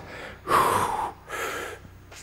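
A man breathing hard under exertion during a barbell good-morning rep: two forceful, noisy breaths in quick succession, starting about half a second in.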